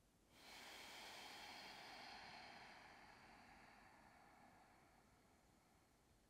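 A faint, long, slow breath out through the mouth or nose, starting abruptly and trailing off over about three seconds.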